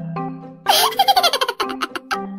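Light marimba-style background music, cut into a little way in by a loud burst of high-pitched giggling laughter: a rising and falling laugh that breaks into a quick run of short giggles, ending just before the music picks up again.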